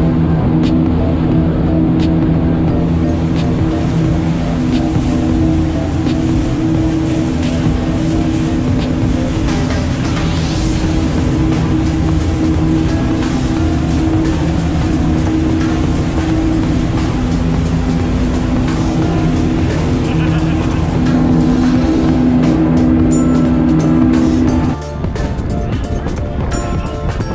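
Twin Suzuki outboard motors running steadily at cruising speed, a constant engine drone over the rush of hull and spray. The engine tone cuts off suddenly about a second before the end.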